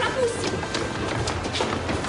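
Schoolchildren running down stairs: quick, uneven footsteps, mixed with voices.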